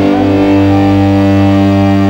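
Live dangdut band holding one long, steady chord on keyboard and amplified strings, with no drums and no singing, as the song ends.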